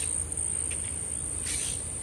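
A steady, high-pitched insect trill that holds one unbroken tone, over faint outdoor background noise.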